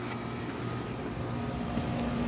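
Five-ton ICP package air-conditioning unit running: compressor and fans giving a steady hum, the compressor brought up through a Micro-Air soft starter.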